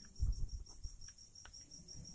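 Steady high-pitched trilling of crickets in the background, with a low thump about a quarter second in and a few faint ticks of a pen on paper.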